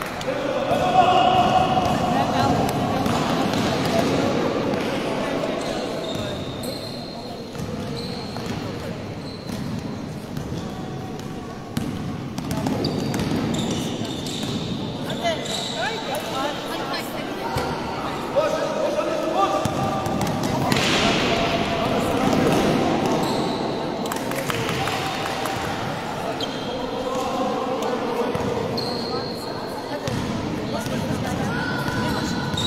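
A basketball bouncing on a gym floor during play, with players and spectators calling out over it, echoing in a large sports hall.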